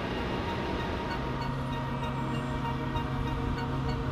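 Steady mechanical rumble and hum of a running aircraft, with a low droning tone that grows stronger about a second in.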